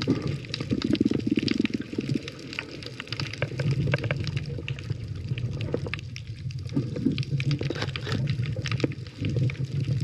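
Water sound picked up by a submerged camera: a muffled, steady underwater rumble with bubbling and many small clicks and crackles.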